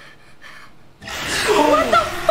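Faint breathy gasps, then about a second in a loud, high-pitched human voice starts, its pitch sliding up and down.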